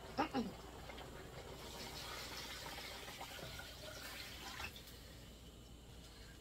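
A brief cough, then water being poured into a pot of steamed meat: a faint, steady rush that starts about a second and a half in and stops just before the five-second mark.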